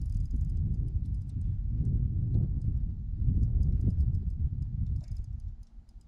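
Wind buffeting the camera microphone: an irregular, gusting low rumble that eases off near the end, with a few faint light ticks above it.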